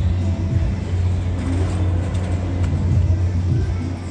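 Fairground sound: a steady, loud low rumble of amusement-ride machinery, with music playing over it.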